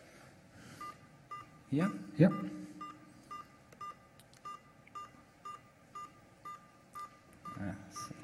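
Short, even computer beeps from the Paparazzi UAV ground control station, repeating a little over twice a second. The beeping means the station is waiting for the aircraft to acknowledge a waypoint move sent over the radio link.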